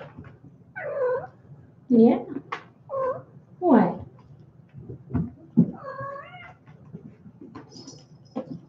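A cat meowing repeatedly, about five short, loud calls that slide in pitch, with a longer wavering call about six seconds in.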